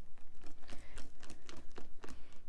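Wire whisk beating a thick pudding and cream cheese mixture in a glass bowl: quick, even strokes, with the wires clicking against the glass several times a second.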